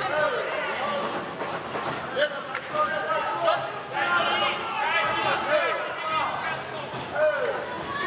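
Men's voices shouting from ringside, overlapping and rising and falling, with arena crowd noise under them.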